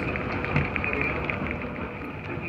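Small Montgomery escalator running: a steady mechanical drone with a few faint ticks.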